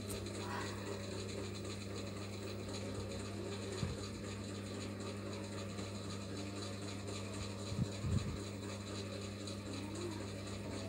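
Steady low machine hum, with a few soft low knocks about four seconds and eight seconds in.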